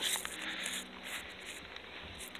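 Soft footsteps on grass as someone walks between garden beds, with light rustling over a faint steady background hum.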